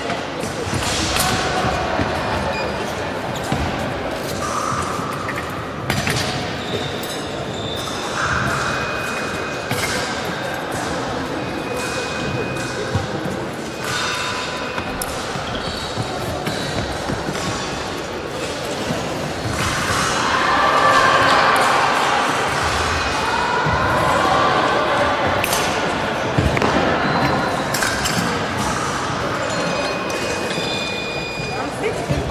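Echoing sports-hall background: indistinct chatter, scattered knocks and thuds, and a few short high-pitched tones. The chatter grows louder about two-thirds of the way through.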